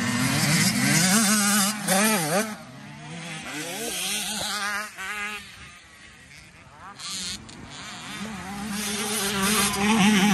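Dirt bike engines revving as riders pass, the pitch rising and falling sharply with the throttle. The loudest pass is in the first two seconds, a quieter stretch follows, and a second bike builds up loud near the end.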